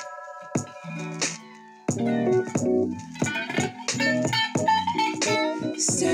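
Electric guitar played along with a neo-soul song. The music is sparse and quieter for about the first two seconds, then the full arrangement with bass comes back in with a jump in loudness.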